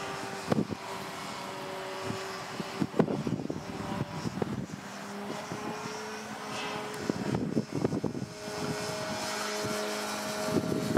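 A 70-inch Slick radio-control aerobatic airplane flying overhead. Its motor and propeller give a steady note that shifts up and down in pitch several times with throttle and manoeuvres, with intermittent buffeting on the microphone.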